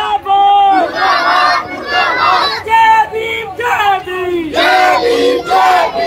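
Protesters shouting slogans in chorus: loud chanted phrases, roughly one a second, with short breaks between them.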